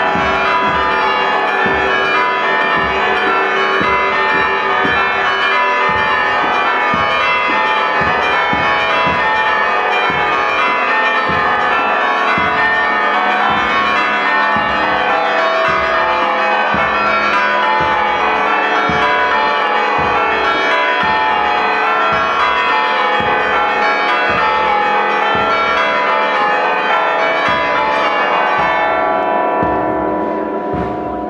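A military marching band plays, with brass and steady bass-drum beats, while church bells ring over it.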